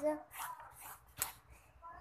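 A plastic pen handled over a paper notebook: soft rustling, then one sharp click a little over a second in.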